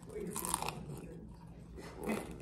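A person chewing a crunchy fried rolled taco, with one louder crunch about half a second in.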